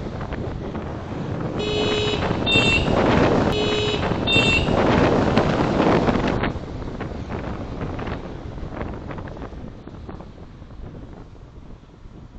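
Wind buffeting the microphone of a camera on a moving scooter, with a horn giving two short double beeps, about two seconds in and again a second and a half later. The wind noise drops away after about six and a half seconds.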